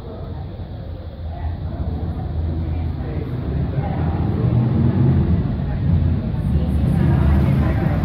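Street ambience: indistinct voices of people nearby over a low rumble, getting louder about halfway through.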